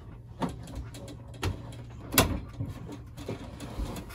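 Knocks and clunks of a tent trailer's stove-and-sink counter being pushed down into its stowed position, with one sharper knock a little after two seconds in. A faint steady low hum runs underneath.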